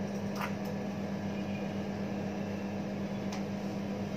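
Steady drone of room ventilation: an even whir with a low hum underneath, and a couple of faint ticks.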